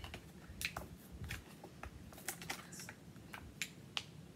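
Clear plastic eyelash packaging clicking and crackling under the fingers in light, irregular taps as it is pried at to get the lashes out.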